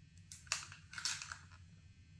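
Plastic crinkling and crackling as it is handled close by, in two short bursts about half a second apart, the first with a sharp crack.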